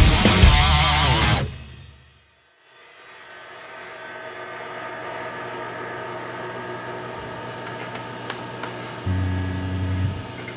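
Heavy rock band with distorted electric guitars and drums playing the final loud bars, which stop about a second and a half in and die away to silence. A quiet steady hum of several held pitches then follows, likely the amplifiers left on, and a louder low tone joins it near the end.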